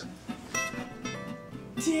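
Soft acoustic guitar music, with plucked notes coming in about half a second in; a voice starts right at the end.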